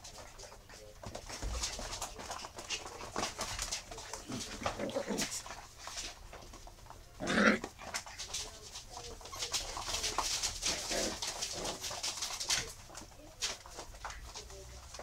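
Eight-week-old miniature schnauzer puppies playing, with short puppy yips and whines. The loudest is a single yelp about seven seconds in. Throughout there are many small clicks and scuffles of paws and toys on a hard floor.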